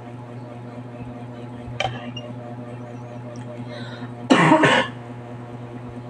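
A person coughs or clears their throat once, a short loud burst about four and a half seconds in, over a steady low electrical hum.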